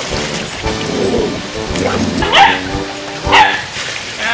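Background music with steady held notes, over which a Cavalier King Charles spaniel barks twice, a little after two seconds and about three and a half seconds in. Water is splashing as it is poured over a dog in a plastic wading pool.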